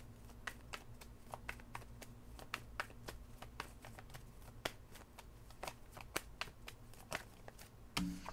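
A tarot deck being shuffled by hand: faint, irregular card clicks and snaps, several a second, as the cards are worked through to draw the next one.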